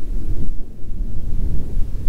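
Wind buffeting the microphone outdoors: an uneven low rumble with little else above it.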